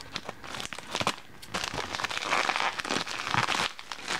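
A plastic shipping bag crinkling and rustling as it is cut open with scissors, with many short clicks among the rustle, busiest in the second half.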